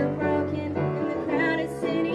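Girls singing a song together, led by one young female voice into a microphone, over steady instrumental accompaniment.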